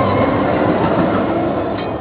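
Tram running along its rails, a steady noise that fades slightly near the end.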